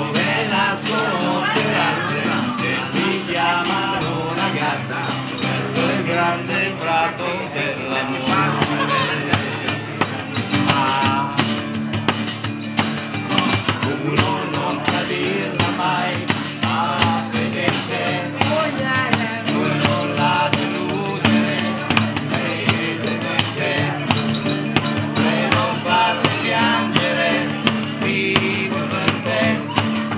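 Live pop music: a band plays an upbeat song with wavering melodic voices over held low notes and a steady, quick hand-percussion beat.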